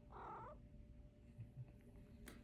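A house cat's brief, soft vocalization, about half a second long, right at the start, followed by near silence.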